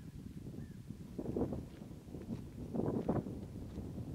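Wind blowing across the microphone on an open shore, a low rumble that swells twice, about a second in and again near three seconds.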